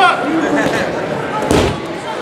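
A single heavy thud of bodies hitting the grappling mat as a standing clinch goes to the ground in a takedown, about one and a half seconds in, under shouting voices.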